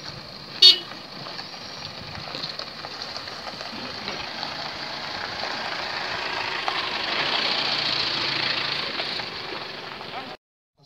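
A short vehicle horn toot under a second in, over a steady outdoor hubbub of a crowd and a slow-moving car that swells toward the end.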